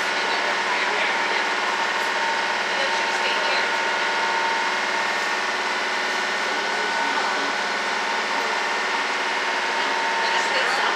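Boat engine running steadily under way, a constant drone with a few steady whining tones, over wind and water hiss.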